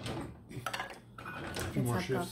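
Dishes and cutlery clinking in a few short knocks while a ceramic mug is sipped from.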